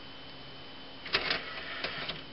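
Sony DVD player's disc tray opening: a few sharp clicks and a short mechanical clatter starting about a second in, over a faint steady electronic tone.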